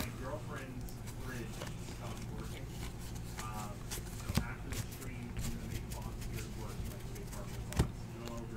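Baseball trading cards being handled and flipped through by hand. Two sharp taps stand out, one a little past the middle and one near the end, as cards are set down on the table, over a faint voice in the background and a steady low hum.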